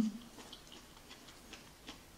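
Closed-mouth chewing of chewy Korean rice cakes and fish cake, heard as a few faint, scattered wet clicks, after a brief low hummed 'mm' at the very start.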